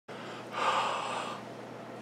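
One audible breath from a man, starting about half a second in and lasting just under a second, over a steady faint room hiss.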